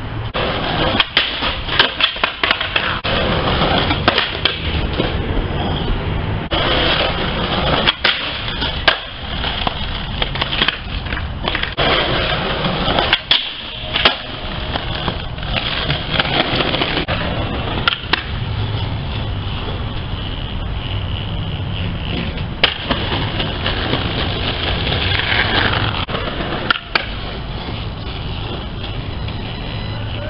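Skateboard wheels rolling on concrete, broken by repeated sharp clacks of the board's tail popping and the board landing.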